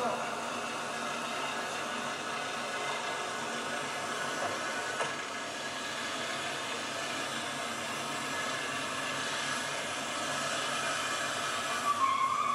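Steady, even rushing noise of a car running in a parking garage, with a light knock about five seconds in.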